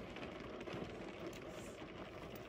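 Faint steady hiss of a quiet car cabin, with no distinct sounds.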